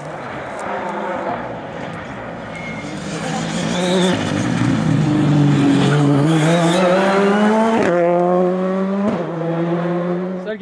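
Ford Fiesta rally car's engine pulling hard out of a corner, rising steadily in pitch. Two upshifts near the end each drop the pitch sharply before it climbs again.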